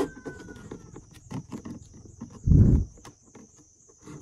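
Clear plastic bottle clicking and crackling as thin wooden sticks are pushed and twisted through holes in its wall, with a squeak that slides slowly down in pitch just after the start. A loud dull thump comes about two and a half seconds in.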